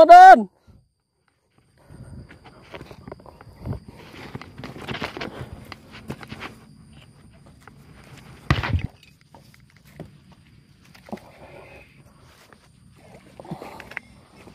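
Faint rustling and handling noises with scattered light clicks and shuffling steps among waterside vegetation, broken by one sharp knock about eight and a half seconds in.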